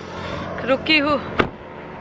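Steady road and wind noise from a car driving on a highway, with a short burst of a woman's voice about a second in.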